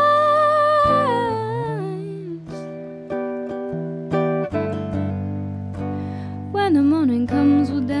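A young woman singing with her own electric tenor guitar: she holds one long note that slides downward at the start, the guitar strums on alone for a few seconds, and a short sung phrase comes in near the end.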